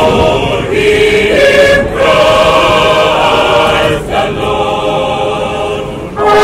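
Mixed choir of men and women singing a hymn in sustained chords, with short breaks between phrases about two and four seconds in.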